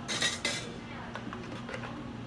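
Hard plastic blender jug being handled and lifted off its base: a short clatter in the first half second, then a few light knocks.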